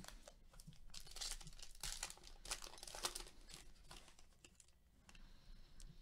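Faint crinkling and tearing of a trading-card pack wrapper being ripped open by gloved hands, a soft crackling rustle for about three seconds that then dies down.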